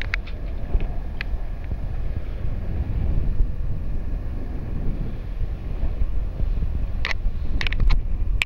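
Wind buffeting the microphone on a sailing catamaran under way at sea, a steady low rumble, with a few short sharp sounds near the end.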